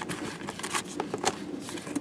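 Cardboard box flaps being handled: a soft papery rustle with several light clicks and taps as the box comes apart.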